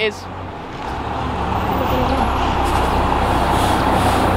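A motor vehicle's engine running with a steady low hum, its noise swelling over the first couple of seconds and then holding steady.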